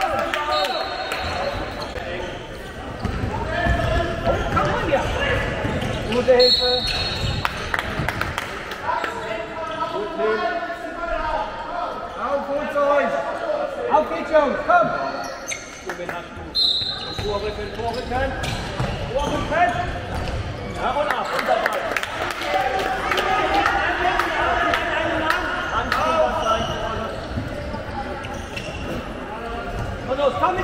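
A handball bouncing repeatedly on a sports-hall floor during play, with voices calling out and chatter echoing around the hall.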